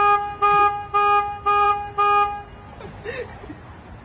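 A car horn sounds five short, evenly spaced honks, about two a second, then stops.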